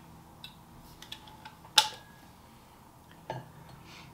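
Handling of a stainless-steel water bottle: a few small clicks, then a sharp metallic clink with a brief ring a little under two seconds in, and a softer knock a little after three seconds as it is set down on the table.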